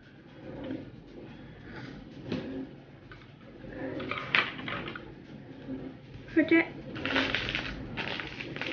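Soft, murmured children's voices with quiet handling of a plastic toy egg, and a sharp click a little past four seconds in.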